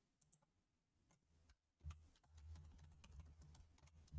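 Near silence with faint computer keyboard typing and mouse clicks.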